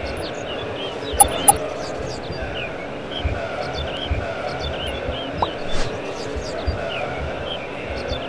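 Closing sound bed under an animated logo card: a steady background full of short chirps, with soft low thumps about once a second. Two sharp clicks come about a second in.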